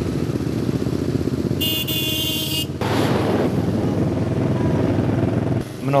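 Motorcycle engines, cruiser bikes among them, running as riders pass through a street, with a steady low pulsing. A brief shrill sound of about a second cuts across it about two seconds in.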